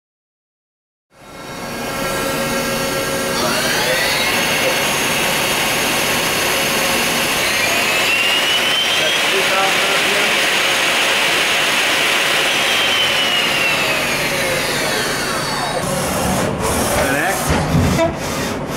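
Mori Seiki NL3000MC/700 CNC lathe spindle and chuck spinning up with a whine rising in pitch, running at speed, then winding down with the pitch falling, over steady machine hiss. Near the end come a few sharp clicks and knocks as the tool turret moves.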